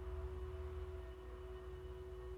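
Soft background music of steady sustained tones, over a low hum.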